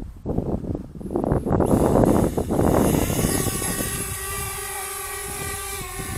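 DJI Spark mini quadcopter's electric motors and propellers spinning up as it lifts off, coming in about a second and a half in and settling into a steady, many-toned whine as it hovers.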